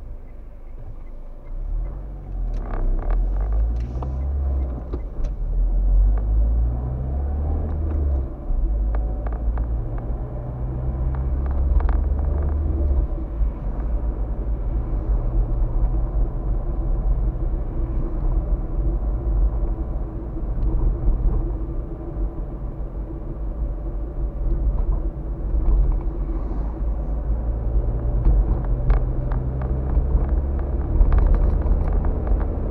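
A car's engine and road noise heard from inside the cabin as it pulls away and accelerates through several gears, the engine note climbing and then dropping at each shift, before settling into a steady cruise that picks up again near the end.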